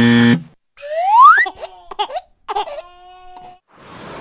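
A game-show wrong-answer buzzer cuts off just after the start. It is followed by short cartoon sound effects: a rising whoop, a few brief squeaks, and a held note near the end.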